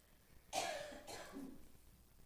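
A single cough about half a second in, starting suddenly and fading out within about a second.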